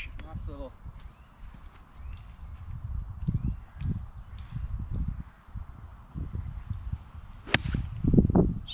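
Low rumble of wind on the microphone, then, near the end, a single sharp click of a golf wedge striking the ball off the fairway turf.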